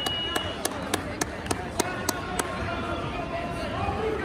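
A quick, even run of sharp hand claps, about three a second, stopping about two and a half seconds in, over the hubbub of a gym crowd. A steady, high buzzer tone cuts off about half a second in.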